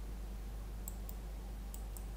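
A few faint computer mouse clicks, one about a second in and two near the end, over a steady low electrical hum on the recording.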